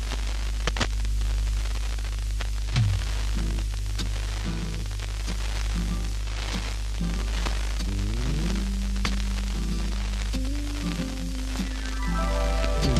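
A record playing on an FM radio broadcast taped off air: sparse low notes come in about three seconds in, over steady radio hiss and a low hum.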